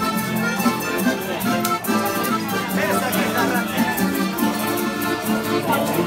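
A tuna playing traditional Spanish music: several guitars strummed in a brisk, even rhythm with maracas shaking, and men's voices singing along.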